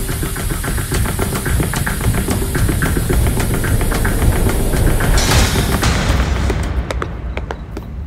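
Tense drama sound design: a heavy low rumble under dense crackling clicks, a whoosh about five seconds in, after which the crackle thins out and fades.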